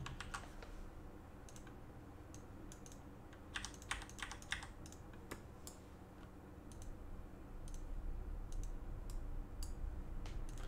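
Computer keyboard typing: scattered faint keystrokes, with a quick run of keys about four seconds in, over a faint steady low hum.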